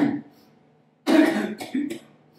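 A man clearing his throat twice: a short one at the start and a longer, broken one about a second in.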